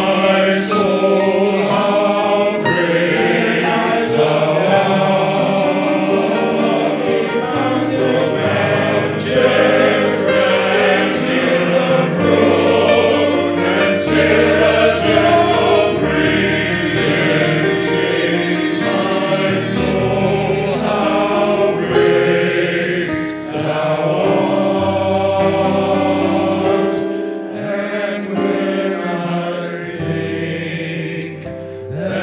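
Men's gospel choir singing in harmony, the voices held in long sustained chords.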